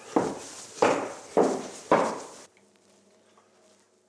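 Footsteps of shoes on a wooden floor, a brisk walk at about two steps a second, stopping about two and a half seconds in; after that only a faint steady hum.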